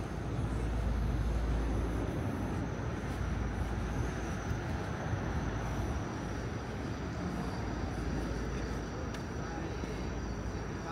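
Steady city road-traffic noise with a low rumble, loudest in the first two seconds as vehicles pass, then easing to an even hum.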